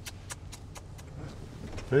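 Low rumble of a 2019 Volkswagen Touareg's engine and tyres, heard from inside the cabin while it creeps along a dirt track. In the first second there is a quick run of sharp ticks, about four a second.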